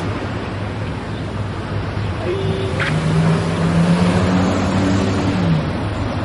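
A motor vehicle passes on the street over a steady rush of traffic noise. Its engine hum swells from about two seconds in and drops in pitch as it goes by, near the end.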